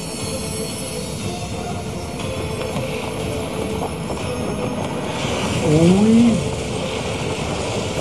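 Anime battle soundtrack: music with a long held note under a dense rushing noise of effects. About five and a half seconds in, a voice cries out "oy", the loudest moment.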